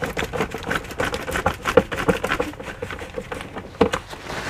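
A Phillips screw being turned in by hand with a screwdriver into a bracket on veneered particle board: a rapid, irregular run of small clicks and scrapes, with faint squeaks.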